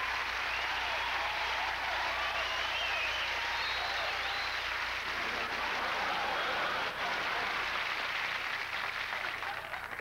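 Studio audience applauding, fading away near the end.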